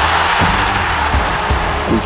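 Trailer music: a loud rushing wash of sound over a steady deep bass, with a few deep low hits.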